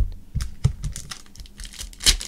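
Trading cards and a foil card pack handled on a tabletop: a sharp knock at the start as the card stack is set down, then a run of light clicks and taps.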